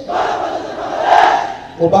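A large group of army recruits shouting a line of their Bengali oath together in unison, a loud, blurred chorus of many voices that falls away about a second and a half in. Just before the end, a single voice begins reading out the next line for them to repeat.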